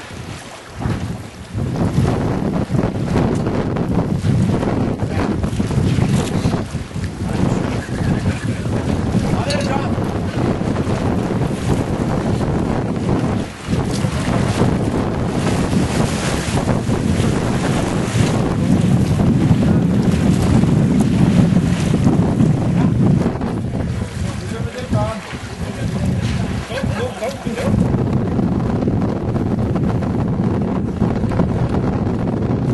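Wind buffeting the microphone, a loud, continuous rumble over the sound of open water, with small dips and surges.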